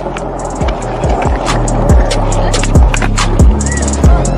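Skateboard wheels rolling on pavement under a music track with a deep kick-drum beat and a steady heavy bass.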